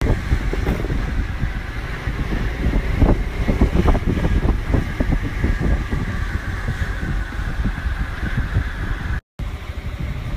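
Motorbike engine running on the move, with heavy wind buffeting on the microphone. The sound cuts out briefly about nine seconds in.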